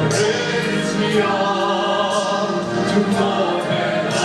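A male solo singer, amplified through a handheld microphone, sings with a women's choir, the voices holding long notes together.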